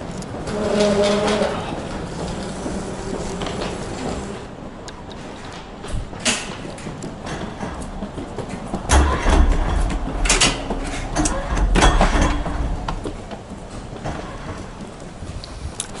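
Sounds of walking through an airport terminal corridor: scattered clacks and clicks over a steady background. About nine to twelve seconds in there is a low rumble with louder clacks while passing through a set of automatic glass gate doors.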